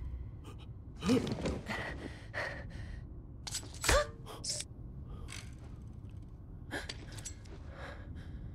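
A person gasping and grunting in short bursts during a struggle, with a loud rising gasp about a second in and another about four seconds in. Brief knocks and rustles fall between them.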